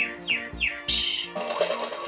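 Electronic sound effect from a Yum Yum Fridge toy, set off by placing the penguin pet in its sleeping pod: a few short falling chirps, then a brief higher tone about a second in. It is the toy's sleeping sound.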